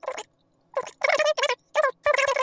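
Four short, high-pitched, squeaky voice-like bursts broken into syllables, like speech played back fast.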